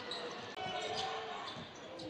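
Basketball arena sound during play: a steady murmur from the crowd with faint court noises from the game.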